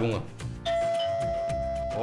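Electronic doorbell ringing: one steady, sustained tone that starts about two-thirds of a second in and holds at an even level, announcing a visitor at the door.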